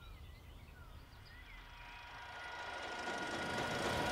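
Faint bird chirps in the first couple of seconds, then the steady whir of a wooden lift platform's mechanism, growing louder as the platform rises.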